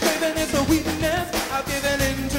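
A woman singing live into a microphone with a band behind her, her voice wavering in pitch over a steady drum beat.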